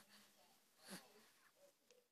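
Near silence, with one faint breathy sound from a young baby about a second in.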